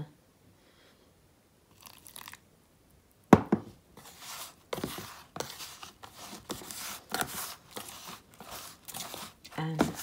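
Fingers raking and squeezing damp, sandy sieved mud in a plastic tub: irregular gritty crunching and scraping. A single sharp knock a little over three seconds in is the loudest sound.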